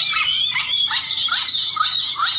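Repeated short rising chirps, about two or three a second, over a busy high-pitched chatter of calls.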